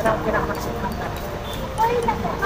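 Brief snatches of people's voices over steady outdoor background noise.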